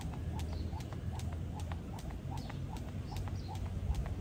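Skipping rope slapping the paving stones in a steady rhythm, a little more than twice a second, together with light landings of the jumper's shoes.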